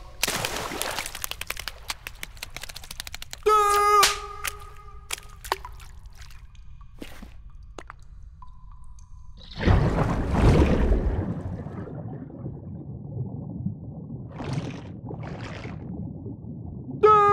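Cartoon sound effects: scattered clicks, a short high voiced call about three and a half seconds in, and a loud rushing noise about ten seconds in that fades over a couple of seconds, then two short hisses near the end.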